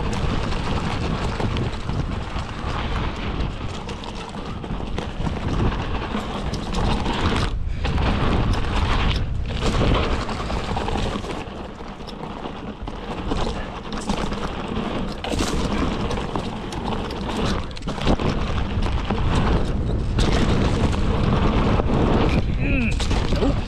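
Wind rumbling on the camera microphone over the hiss and crunch of mountain bike tyres rolling fast down a dirt trail, steady and loud with a few brief drops.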